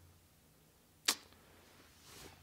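A single short, sharp click about a second in, against quiet room tone.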